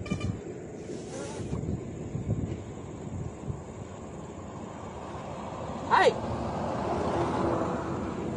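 A man's short, loud shout of "Hey!" about six seconds in, over steady low outdoor rumble.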